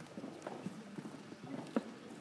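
Footsteps of several people, shoes clicking irregularly on a hard floor, a few steps a second.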